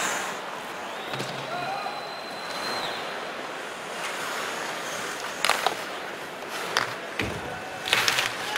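Hockey arena game sound: a steady crowd murmur with skates scraping the ice and sharp clacks of sticks and puck, loudest in a couple of knocks about five and a half seconds in and near the end.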